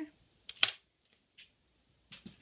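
A sharp slap of a sheet of planner paper put down on the desk, about half a second in, with a lighter tap just before it and a faint one about a second later.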